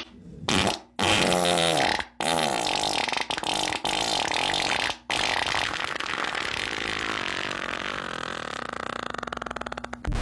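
Cartoon fart sound effects: four farts in a row, each longer than the last, the final one lasting about five seconds, slowly fading and breaking into rapid fluttering pulses near the end.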